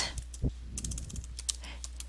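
Computer keyboard typing: a run of irregular keystrokes.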